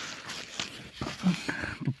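Rustling and handling noise from a phone carried close to grass, with irregular scuffs and a little faint muttering near the end.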